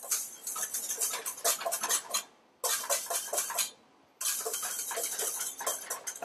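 Wire whisk beating egg-yolk sabayon in a stainless steel bowl: a fast, rattling run of clicks as the wires strike the metal, stopping briefly twice, a little after two seconds in and just before four seconds.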